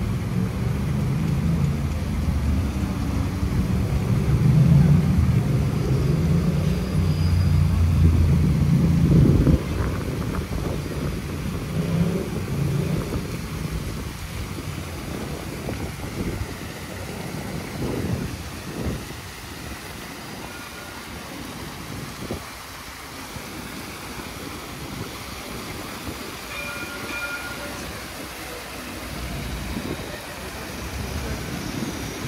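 A heavy vehicle passing with a low motor hum, loudest in the first ten seconds and then fading away, over the steady splashing of fountain water jets.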